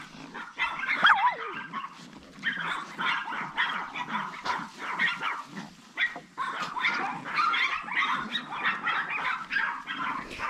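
Several chihuahua puppies yapping and barking over one another in rapid, high-pitched yaps, loudest about a second in. The little ones are ganging up on a new dog in their yard.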